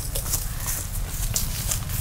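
Dry grass and fallen leaves crackling irregularly, with wind rumbling on the microphone.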